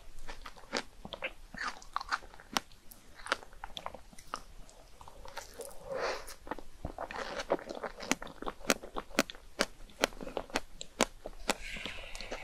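Close-miked wet chewing of a fresh strawberry coated in Nutella chocolate whipped cream, with many sharp, irregular mouth clicks and smacks.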